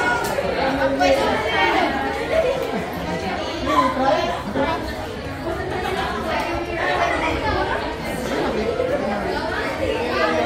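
Overlapping chatter of many students' voices at once in a classroom, with no single voice standing out.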